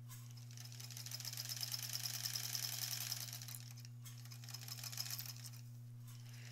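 Sewing machine stitching a seam through patchwork quilt fabric: a fast, even run of stitches lasting about three and a half seconds, then a shorter burst about four seconds in.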